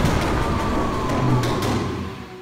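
A car engine sound with music behind it, the engine note slowly falling in pitch, beginning to fade out near the end.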